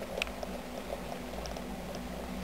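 Fancy mouse pups, eleven days old, crawling over one another on wood shavings: a continuous fine crackling rustle of the shavings with scattered tiny clicks, over a steady low hum.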